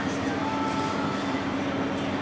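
A steady low mechanical drone with a strong hum, as of large fans or machinery running in a big indoor hall, holding an even level throughout.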